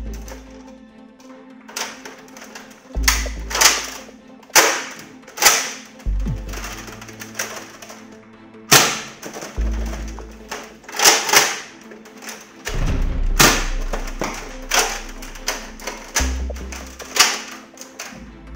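Background music with a bass beat, over which plastic parts of a Nerf Modulus LongStrike blaster click and knock, sharply and at irregular intervals, as it is handled and fitted together.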